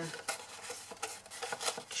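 Scored cardstock being folded one way and then the other by hand, the card rustling and crinkling with small irregular clicks as the creases give.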